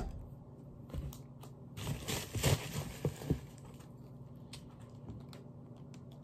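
Hands handling cosmetic bottles and packaging. There is a sharp click at the start, then a rustle about two seconds in with a few knocks after it, then only light ticks.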